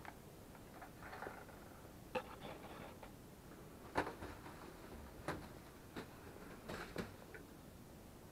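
Faint rustling of a plastic carrier bag and a scattering of light clicks and knocks, about seven in all, as the bag is handled and lifted off a plastic suction wall hook.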